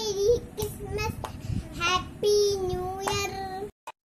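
A young girl singing solo, holding long notes with a slight waver. The singing cuts off abruptly shortly before the end.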